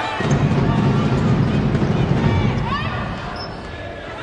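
Basketball game in play on an indoor court: the ball bouncing on the hardwood under steady arena crowd noise, with a few short high squeaks about three seconds in.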